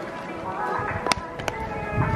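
Baseballs smacking into leather gloves during a game of catch: a few sharp pops, the clearest about a second in, over background music.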